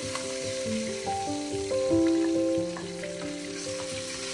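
Chicken legs sizzling in hot oil in a frying pan, with a few light taps of a fork against the pan as the pieces are lifted out. A gentle background melody of held notes plays over the sizzle.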